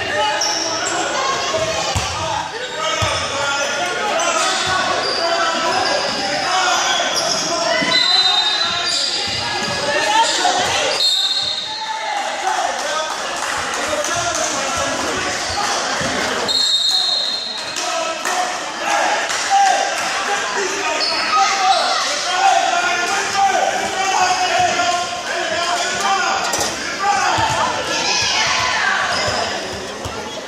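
Youth basketball game in a large, echoing gym: a ball bouncing on the court amid steady chatter and shouts from spectators and players, with a few short high squeals.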